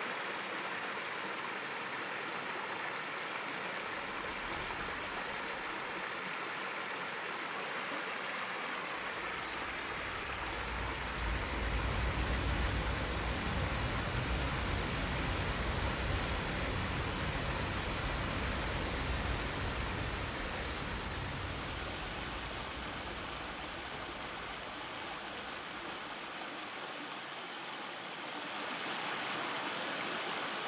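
Steady rushing of flowing water, with a deeper rumble joining under it for a while in the middle.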